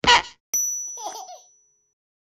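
A short baby laugh, then about half a second in a bright bell-like ding that rings and fades over about a second, with a little more baby vocalising under it.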